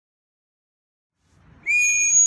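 Silence, then near the end a loud, steady blast on a handheld whistle begins and holds one even pitch.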